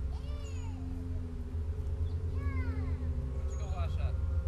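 Two drawn-out animal cries, each rising and then falling in pitch, about two seconds apart, over a steady low hum.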